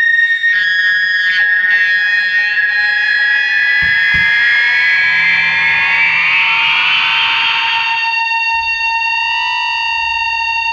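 Electric guitar feedback through an amplifier: high sustained tones, one gliding upward in pitch through the middle, settling into a steady lower tone near the end. Two brief low thumps about four seconds in.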